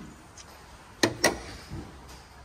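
A motorhome's bonnet being shut: two sharp bangs about a quarter of a second apart, about a second in.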